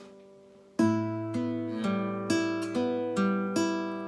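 Classical guitar played fingerstyle on open strings. After a short pause the fifth and first strings are plucked together, then the second, third and first strings are picked one after another, about two notes a second, each left to ring.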